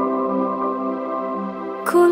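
Slow instrumental passage of an Islamic religious pop song: sustained synth chords held steady, then a sharp percussive hit just before the end as the full arrangement comes in.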